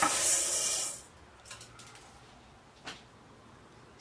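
Dry glutinous rice grains poured from a bowl into a pot, a hiss of falling grains that stops about a second in. A couple of faint clicks follow.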